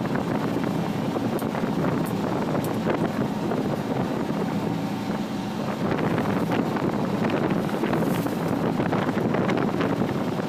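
Fishing boat (bangka) engine running with a steady low hum under wind buffeting the microphone and the wash of the sea. The hum becomes less distinct about halfway through, leaving mostly wind noise.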